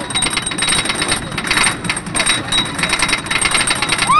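Wooden roller coaster train of the Stampida clattering on its track: a rapid, even run of mechanical clicks.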